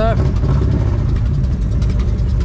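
V-twin motorcycle engine idling steadily.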